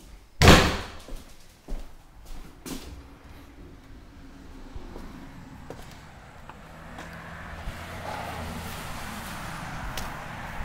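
A door banging shut about half a second in, followed by a few lighter knocks, then a steady outdoor background hum and noise that grows slowly toward the end.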